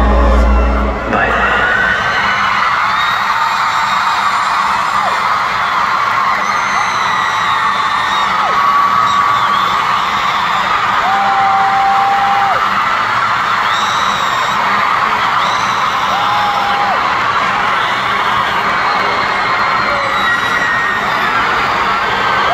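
Music with deep bass cuts off about a second in, then a large concert crowd cheers and screams, with long high-pitched screams standing out above it.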